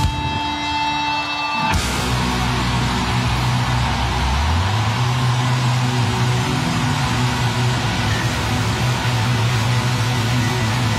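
Live rock band playing loud: a held guitar tone rings for the first couple of seconds, then at about 1.7 s the full band comes in with distorted electric guitars and a moving bass line.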